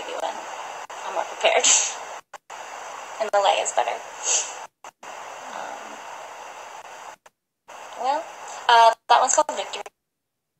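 A woman's voice in short, broken bits of talk over a steady hiss, with the sound cutting out completely several times, as happens with a live-stream phone recording.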